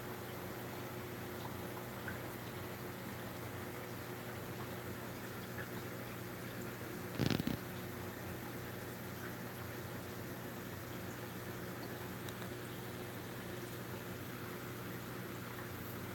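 Steady low hum with faint water bubbling from running aquarium equipment. One brief, louder sound breaks in about seven seconds in.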